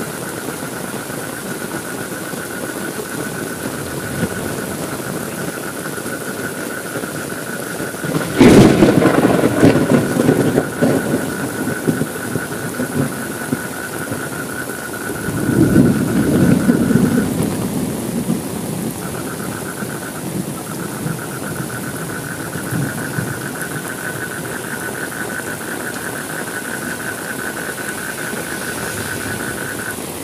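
Steady rain falling, with a sharp crack of thunder about eight seconds in that rolls on into a rumble for a few seconds. A second, slightly softer rumble of thunder comes about halfway through.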